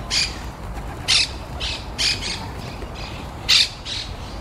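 A dense flock of feral pigeons crowding over scattered rice, with several short bursts of wing flapping as birds jostle and lift; the loudest burst comes near the end.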